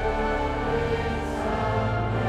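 A large congregation and choir singing a Dutch hymn together with sustained instrumental accompaniment, the many voices held in long notes.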